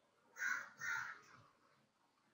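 A crow cawing twice, two harsh calls each about half a second long.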